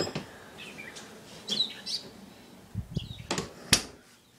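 Small birds chirping in short calls over faint outdoor background noise, then a few sharp clicks and knocks near the end.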